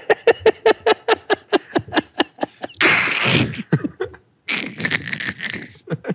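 Two men laughing hard: a quick run of short laughing breaths, about five a second, then a louder, longer breathy burst about three seconds in, and more laughter after a brief pause.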